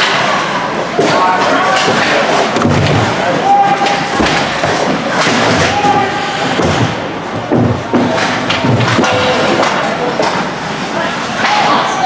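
Ice hockey play heard close to the boards: repeated thuds of the puck and players hitting the boards, with sharp stick clacks and skate scrapes on the ice. Voices call out now and then.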